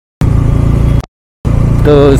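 Bajaj Dominar's single-cylinder engine running steadily while riding at cruising speed, a loud low drone heard through a helmet mic. The sound drops out to dead silence twice for a moment, at the start and about a second in.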